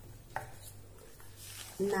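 A low steady hum with a single short click about a third of a second in; a woman's voice begins counting "nine" near the end.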